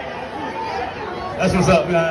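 Chatter of several people talking, with one louder voice calling out about one and a half seconds in.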